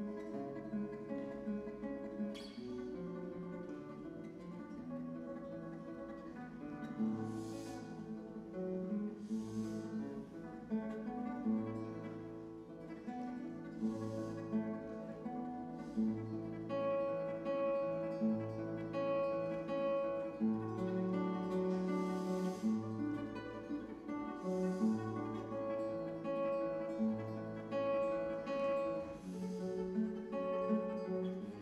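Classical nylon-string guitar played solo and fingerpicked: sustained melody notes ring over a bass note that recurs about every second and a half.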